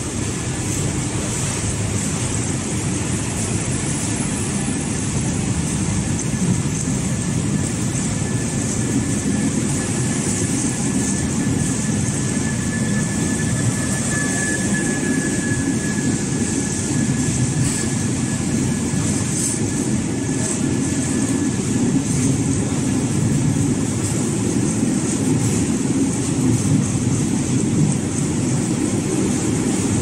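A long Belgian SNCB double-deck passenger train rolling past along the platform: a steady rumble of wheels and running gear that slowly grows louder, with a thin high whine that comes and goes over the first two-thirds.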